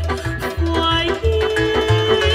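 Romanian lăutărească taraf playing live: a woman singing with violin, accordion, țambal and a plucked double bass. The bass keeps a steady pulse about three beats a second under a wavering melody, and a held note comes in a little past the first second.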